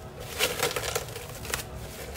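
Plastic cling film crinkling as it is pulled out from under an upturned stainless steel pan, in short crackly bursts about half a second in and again around a second and a half.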